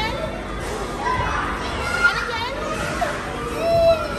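Young children's voices at play: chatter, shouts and squeals from several toddlers mixed together.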